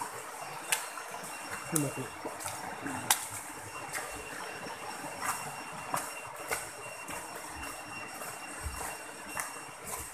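Steady rush of a rocky stream under scattered clicks and knocks from footsteps on stones and the handheld camera being jostled while walking. A brief voice sound about two seconds in.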